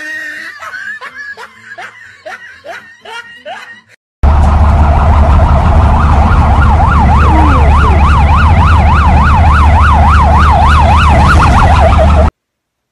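A person laughing in short rising bursts. About four seconds in, a very loud siren starts suddenly: its pitch sweeps rapidly up and down about three times a second, over a heavy low rumble.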